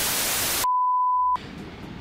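Television static sound effect: a hiss of white noise that cuts off about two-thirds of a second in, followed by a single steady high beep lasting under a second.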